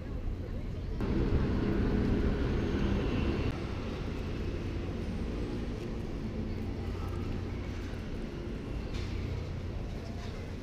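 Ambience of a station shopping concourse: a steady low rumble with indistinct voices of passers-by, louder and busier for a couple of seconds from about a second in.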